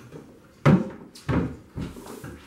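Wooden cabinet doors being shut: a sharp knock about two-thirds of a second in, followed by two weaker thuds.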